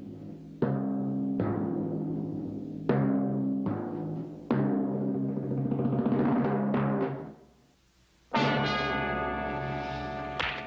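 Dramatic orchestral score: a run of five hard-struck chords with heavy drum hits, each ringing on briefly. It fades almost to nothing about seven and a half seconds in, then a new, higher sustained chord comes in.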